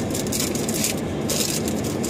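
Trading-card pack wrapper crinkling and rustling in short bursts as it is torn open and handled, over a steady low hum.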